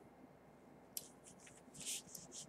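Soft rustling of a dress and its ribbon tie being adjusted at the waist: quiet at first, then a light click about halfway through and brief rustles, the loudest near the end.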